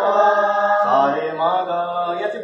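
A small group singing long, held notes together without clear words in a slow, chant-like line. A lower voice joins just under a second in.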